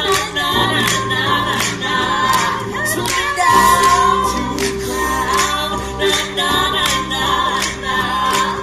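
Small mixed a cappella choir singing in parts, a female voice on top, over a held low bass note. A steady beat of sharp clicks runs under the voices at about two a second.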